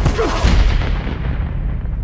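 A heavy cinematic boom hit lands with a punch, followed by a deep rumble that slowly fades. A short cry comes near the start.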